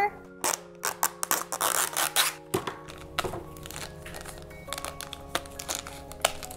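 A plastic toy blind pack being torn open and its wrapper crinkled by hand: a rapid run of crackles and rips, thickest in the first half, thinning to a few clicks later. Light background music plays under it.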